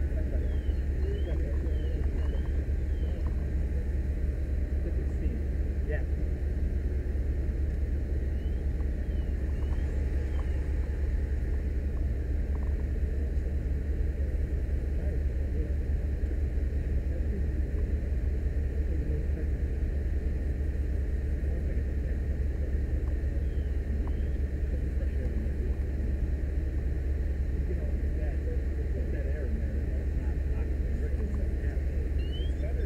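Steady, unbroken low engine rumble, with faint indistinct voices and a few faint short chirps over it.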